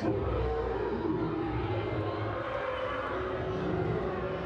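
A steady low rumble with a faint hum above it, starting abruptly and holding an even level.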